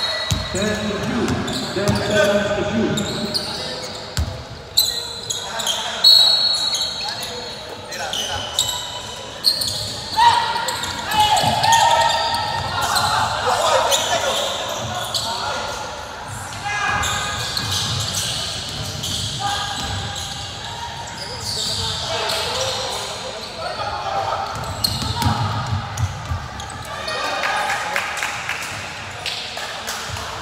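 Basketball game play on a hardwood court in a large gym: the ball bouncing, short high sneaker squeaks, and indistinct shouts from players and onlookers.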